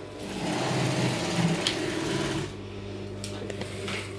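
Industrial sewing machine stitching jute bag fabric for about two seconds, then the stitching stops and a steady hum carries on.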